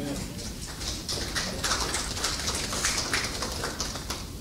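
Scattered hand clapping from a small audience, a ragged run of separate claps rather than a dense roar, with people talking quietly underneath.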